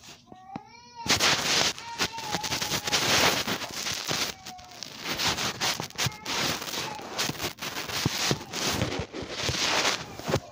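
A short rising cry in the first second, then loud rustling and scraping as the phone is handled and rubbed against fabric close to the microphone.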